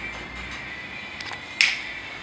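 A single sharp finger snap about one and a half seconds in, over low background noise.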